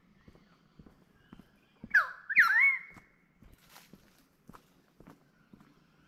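Footsteps of a walker, about two a second, with a loud two-note bird squawk about two seconds in: the first note sweeps sharply down, the second hooks up and down.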